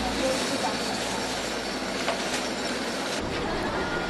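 Steady outdoor street noise on a rainy street, with a few faint voices and light clicks.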